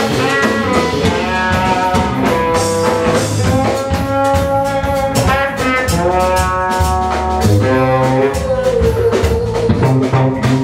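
Live rock band playing an instrumental jam: a lead line of long, gliding sustained notes over drum kit, bass, rhythm guitar and congas, with no vocals.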